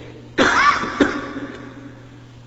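A short cough in two bursts about half a second apart, the first the louder, over a steady low hum in the recording.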